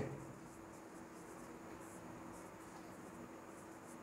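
Faint sound of a marker pen writing on a whiteboard over quiet room tone.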